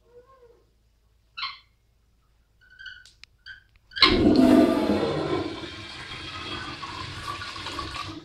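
A few brief faint squeaks and clicks, then about halfway through a sudden rush of water as the American Standard Instanto toilet flushes, loudest at first and easing to a steady flow of water through the bowl.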